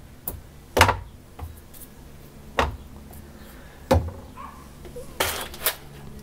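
Separate knocks and thuds as rolls of tape, a glue bottle and other items are picked up and moved off a CNC router's wooden wasteboard. There are about half a dozen knocks, and the loudest come about a second in and near the end.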